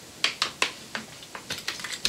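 About half a dozen light, sharp clicks and crackles of a plastic water bottle being handled and set down.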